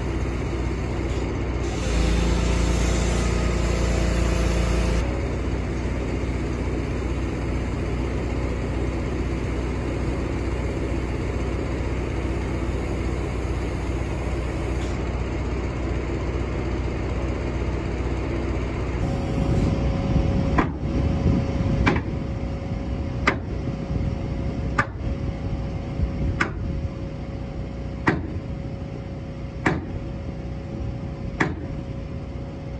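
A machine engine running steadily, louder for a few seconds near the start. In the last third the sound changes to a steady hum with sharp knocks about every second and a half.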